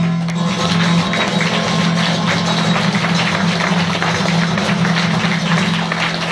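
Audience applause in a small room as a song ends, with a steady low tone held underneath.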